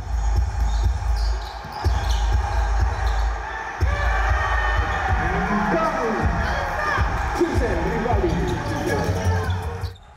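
Court sound from a basketball game: a basketball dribbling on a hardwood floor with repeated low thuds. From about four seconds in there are many short squeaks and voices, which cut off suddenly at the end.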